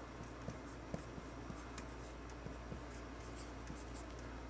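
Felt-tip marker writing block letters on a whiteboard: faint scratches and small taps as each stroke starts and ends, over a low steady hum.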